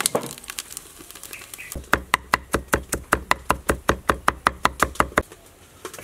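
A cleaver chopping fast on a wooden chopping board, about six even strokes a second, for about three seconds, with a few scattered knocks and crackles of firewood before it.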